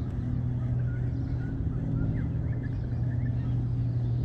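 Baitcasting reel being cranked in at a steady pace, its gears giving a steady low whirr, with faint chirps of birds higher up.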